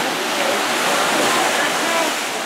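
Seawater surging and washing around rocks: a steady, loud rushing of surf.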